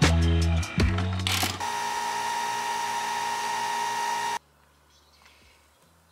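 Background music with a steady beat ends about a second and a half in, giving way to a capsule coffee machine running with a steady whining hum and hiss, which cuts off suddenly about four seconds in.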